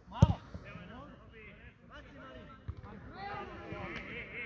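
Several men's voices calling out across a football pitch. A loud thud of a football being kicked comes about a quarter second in, and a softer thud follows near the end.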